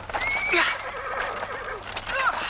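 A horse whinnies once, in a long quavering call. It starts about a quarter second in, is loudest about half a second in, then wavers downward and trails off near the end.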